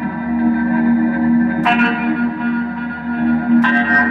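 Electric guitar played through effects pedals, with reverb and echo: chords struck twice, each left ringing and sustaining over a steady low drone.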